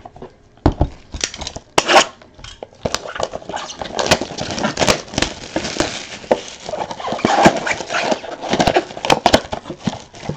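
2017 Donruss Optic football trading cards and their pack wrappers handled at close range: dense rustling, crinkling and quick clicks of glossy card stock, beginning about a second in.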